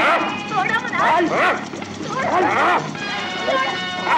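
Short yelping cries and shouts, each rising and falling in pitch, repeated several times during a physical struggle, over sustained background music notes.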